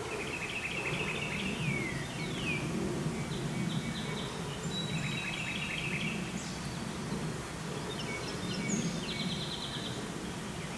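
Songbirds singing short trilled and down-slurred phrases every few seconds, over a steady low background rumble.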